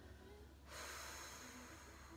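A woman breathing out forcefully through the mouth, a hissing exhale that starts a little under a second in and lasts about a second and a half. It is the paced breath out on the effort of a Pilates double leg stretch.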